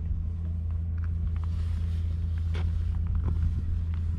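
A boat's engine running with a steady low drone, with a few faint clicks over it.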